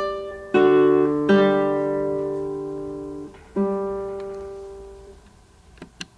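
Nylon-string classical guitar playing a short slow passage of plucked notes and chords, each left to ring and fade; the last chord, about three and a half seconds in, dies away, and a faint click follows near the end.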